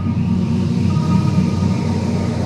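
A steady, low rumbling drone with faint held tones above it, the build-up of a cinematic logo-animation sound effect.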